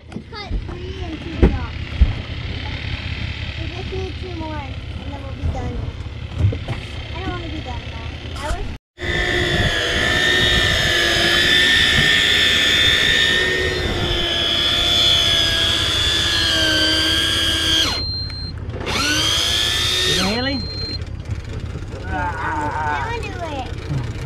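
An electric deep-drop fishing reel's motor whines steadily as it winds line up from a deep bottom with a fish on. The whine starts abruptly about nine seconds in, breaks off near eighteen seconds, and comes back briefly for a second or so. Before it there is only softer wind and boat noise.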